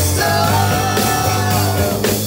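Live rock band jamming: amplified electric guitars and bass over a drum kit, with one long held high note that dips in pitch near the end.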